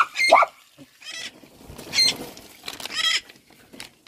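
Short, high-pitched animal cries, about five of them, roughly a second apart, the first one rising in pitch.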